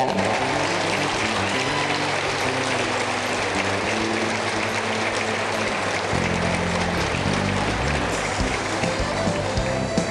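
Audience applauding over background music with a moving bass line.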